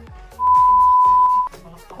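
A single loud electronic beep, one steady pitch held for about a second, over background music with a steady beat.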